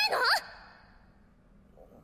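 The end of a girl's shouted line, her voice rising in pitch and cutting off about half a second in, followed by a short fading tail and then near silence.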